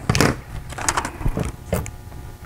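Wrapping paper being handled and trimmed with scissors: a few short, crisp rustles and snips, the loudest about a quarter second in.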